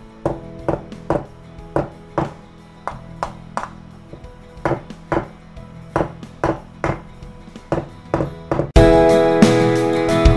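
Repeated blows of the iron head of a ginger pounder on a whole frozen coconut's shell, about two a second, cracking the shell to loosen the kernel inside. Background music runs underneath and swells much louder near the end.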